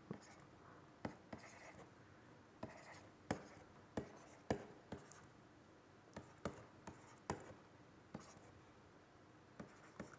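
Pen writing, faint: about a dozen sharp, irregularly spaced taps with short scratchy strokes between them as symbols are written.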